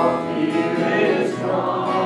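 Gospel music: singing over instrumental accompaniment, loud and continuous.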